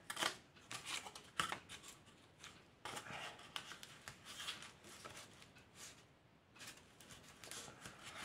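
Faint rustling and scraping of cardboard pieces being handled, slid against each other and pressed flat by hand, in short scattered bursts.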